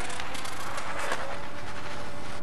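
Small electric motor and propeller of a round-the-pole model aircraft running faster as it gathers speed for take-off: a rushing noise, with a single steady note coming in about a second in.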